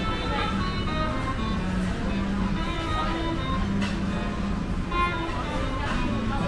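Background music with guitar, playing a melody of held notes over a steady low hum.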